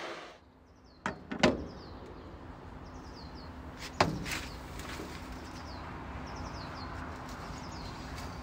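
A ceramic coffee mug set down on a tray with a sharp knock about halfway through, after two lighter knocks about a second in. Birds chirp short falling calls over a steady outdoor background.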